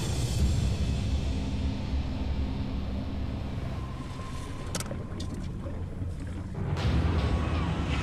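Steady low rumble of a crab boat's engine with the wash of the sea, under a music score. A few sharp clicks come about halfway through, and the sound swells louder near the end.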